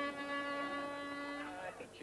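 Handheld aerosol air horn giving one steady blast of about a second and a half, then cutting off.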